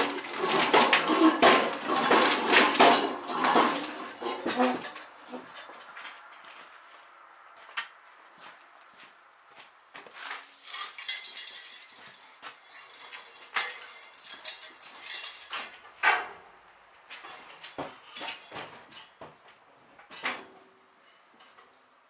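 Metal tools and clutter being moved aside by hand, clanking and rattling. The clatter is densest in the first five seconds, then thins to scattered knocks and clinks.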